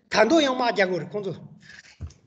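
A person speaking for about a second and a half, then a faint scratchy rustle near the end.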